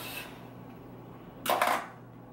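A brief clatter about one and a half seconds in, as a digital meat thermometer's metal probe is set down on a kitchen counter.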